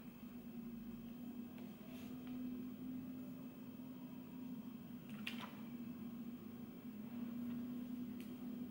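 Quiet room with a steady low hum, over which a few soft paper rustles and clicks sound as the pages of a book are leafed through, the clearest about five seconds in.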